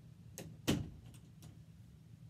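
A door off-camera: two thuds about a third of a second apart, the second louder, followed by two faint clicks.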